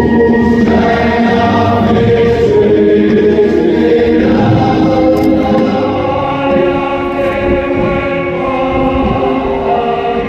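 Choir singing slow, solemn music in long held notes, moving gradually from chord to chord.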